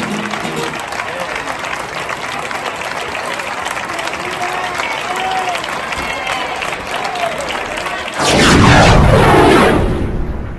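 Audience applauding with a few shouts at the end of a flamenco song. About eight seconds in, a sudden, much louder rush of noise with falling, sweeping tones cuts in and runs on.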